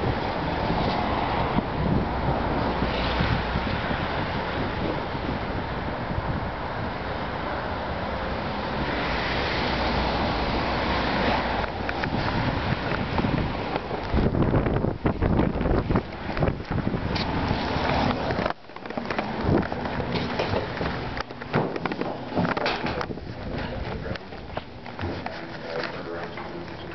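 Wind buffeting a handheld phone's microphone: a loud, steady low rush. About halfway through it turns choppy, with scattered knocks and handling noise as the phone is moved about.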